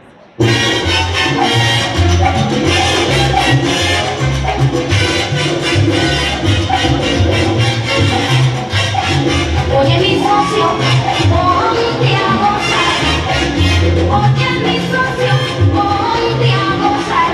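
Salsa music starts abruptly about half a second in and plays loudly, with a steady percussion beat and a bass line.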